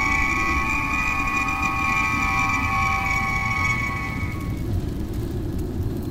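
Star Trek–style transporter beaming sound effect: a chord of steady high tones over a low rumble. The tones fade out about four seconds in, leaving the rumble.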